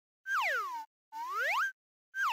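Cartoon swoop sound effect: a pitched tone sliding down over about half a second, then a second one sliding back up.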